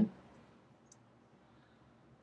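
The end of a man's narrating voice, then near silence: room tone with one faint click about a second in.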